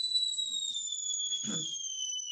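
Water kettle whistling at the boil: one high, steady whistle whose pitch slowly sinks.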